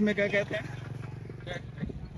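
A motor vehicle engine running with an even, rapid pulse for about a second and a half, after a brief bit of a man's voice.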